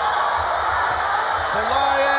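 Arena crowd noise during a mixed martial arts bout, with a man's voice calling out one long held shout about one and a half seconds in.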